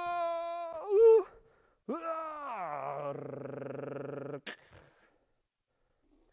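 A man's playful drawn-out vocalizing: a long held high "ooo", a short louder cry about a second in, then a voice sliding steeply down in pitch into a low held growl that stops abruptly, followed at once by a single sharp knock.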